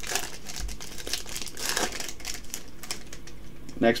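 Foil trading-card booster pack crinkling and rustling as it is torn open by hand, a quick, uneven run of small crackles.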